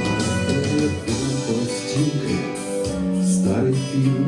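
Instrumental passage of a song: guitar with a bass line playing steady chords, no voice.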